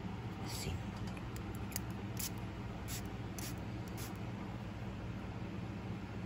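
Quiet handling of a small spray bottle just freed from its plastic seal: a handful of short, sharp clicks and crinkles over the first four seconds, over a steady low hum.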